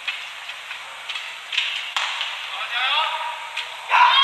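Badminton racket strokes on a shuttlecock, a few sharp hits in the first two seconds, over the steady murmur of an arena crowd. A short shout follows about three seconds in, as the rally ends.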